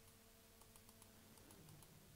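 Near silence: a very faint steady hum from a NEMA 17 stepper motor running, which changes to a lower tone about one and a half seconds in.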